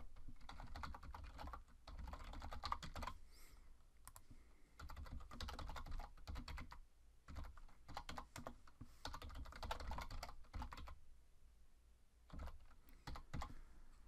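Typing on a computer keyboard: runs of rapid keystrokes in four bursts with short pauses between.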